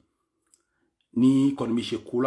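About a second of near silence, then a man's voice speaking.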